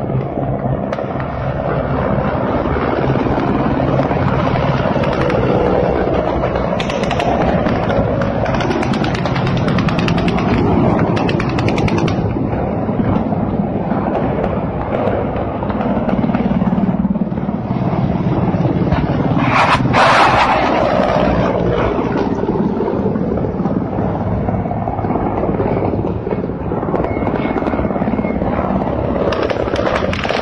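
Low-flying military helicopters passing close: loud, continuous rotor and turbine noise with steady low tones, rising into a brief louder rush about two-thirds of the way through.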